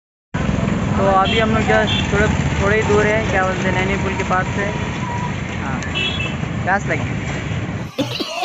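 Steady rumble of road traffic, motorcycles and cars passing close by, under a man talking.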